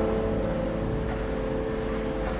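Cello holding one long note that slowly fades, closing out a piece.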